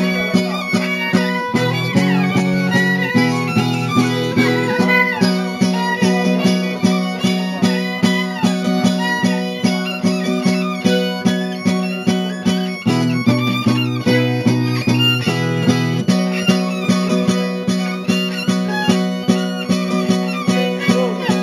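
Traditional Oaș folk music from Țara Oașului. A ceteră (fiddle) plays a melody over a steady strummed beat on the zongură, a small folk guitar.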